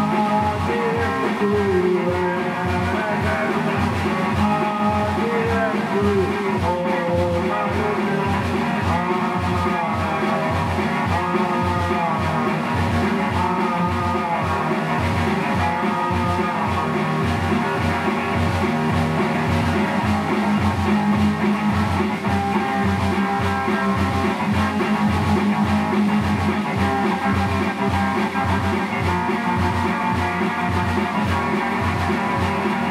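Rock ballad on electric guitar over a steady low beat, with a melodic line bending in pitch above it.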